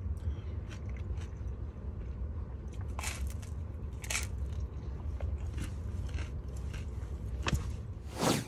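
A man biting and chewing a thin, crispy slice of pizza, with a few sharp crunches, the loudest about three and four seconds in. Underneath runs the steady low rumble of the car cabin.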